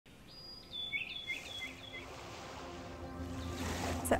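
Bird calls: a short held whistle, then four or five quick falling chirps in the first two seconds, over faint outdoor ambience. A low hum, likely soft music, comes in near the end.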